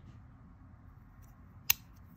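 A small bolt-action pen clicking once, a single sharp snap near the end, over faint handling noise.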